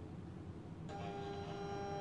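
Silhouette Cameo 4 cutting machine drawing a cutting mat in through its rollers as it is loaded: a steady, even motor whine that starts suddenly about a second in and lasts just over a second.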